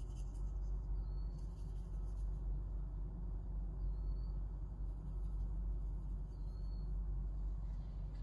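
Steady low background hum of room tone, with three faint, short high-pitched chirps: one about a second in, one midway and one after six seconds.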